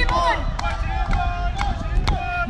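Indistinct voices of people talking, with words that cannot be made out, over a steady low rumble.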